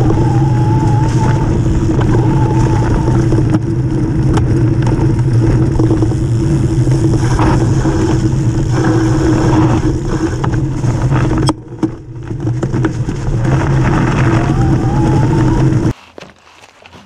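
Mountain bike riding along a dirt and gravel trail, heard from a camera on the front fork: loud steady tyre rumble and hum with rattle from the bike, and a faint wavering whine that comes and goes. About eleven seconds in there is a sharp click and the noise drops for a moment, then picks up again.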